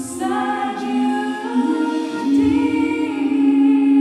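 Mixed choir singing slow sustained chords, moving to a new chord about two seconds in and holding it.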